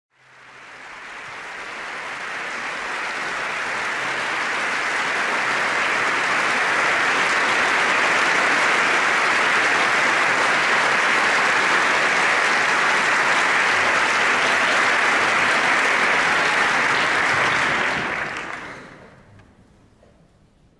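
Concert-hall audience applauding: the clapping swells over the first few seconds, holds steady, and dies away near the end.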